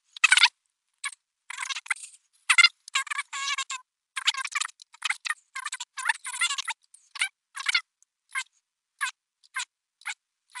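Fast-forwarded audio of computer keyboard typing and mouse clicks, pitched up and sounding thin. It comes in many short, irregular bursts, close together at first and thinning out near the end.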